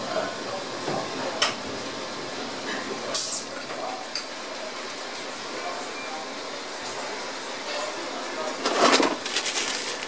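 Steady commercial-kitchen background noise with a few light clicks and clinks, and a louder rustling burst about nine seconds in.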